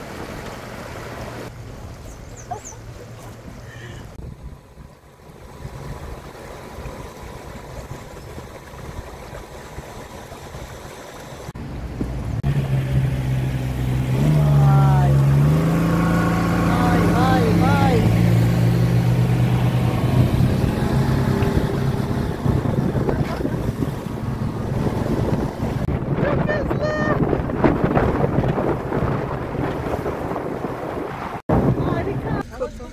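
Inflatable boat's motor running steadily with water and wind noise. It gets clearly louder about twelve seconds in. Indistinct voices are heard over it.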